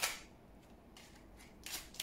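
Small oracle cards being handled, with a short dry rasp of a card sliding off the deck near the end.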